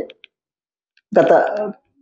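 Speech in Telugu broken by about a second of silence, with a faint click in the pause just after the first words stop.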